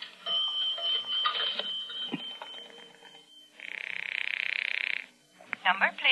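Sound effect of a dime going into a 1950s pay telephone: a bell-like ring that holds for about three seconds, then a rapid pulsing buzz for about a second and a half.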